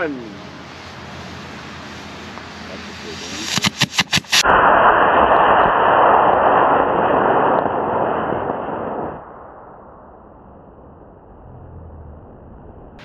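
E-class model rocket motor firing: a few sharp sputtering pops at ignition about three and a half seconds in, then a loud, steady rushing hiss of the burn for about five seconds that cuts off fairly suddenly.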